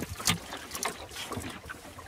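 A wooden Mallard sailing dinghy's rudder dragging over a sandy bottom in shallow water: irregular scraping with a few small knocks over the rush of water along the hull. The sound is a sign that the boat is grounding on a sand bank.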